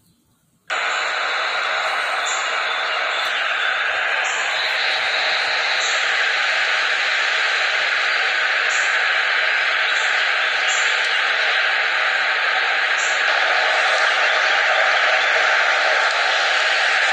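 A steady rushing noise with no clear pitch, starting right after a brief cut-out of the sound at the very beginning.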